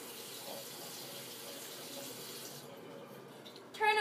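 Bathroom sink tap running, water splashing into the basin as a steady hiss; the higher part of the hiss falls away about two and a half seconds in.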